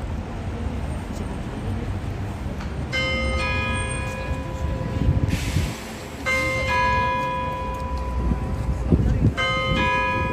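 Large tower bell striking three times, about three seconds apart, each stroke ringing on. Underneath is a steady low outdoor rumble with faint voices.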